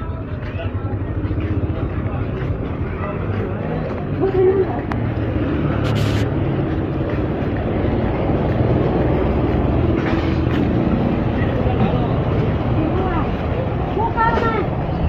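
Busy street ambience: a steady rumble of road traffic with faint voices around it and a brief sharp noise about six seconds in.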